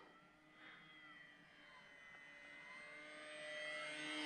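Electric motor and propeller of a Durafly Brewster Buffalo RC warbird, a faint steady whine from a distance, slowly getting louder as the plane comes closer.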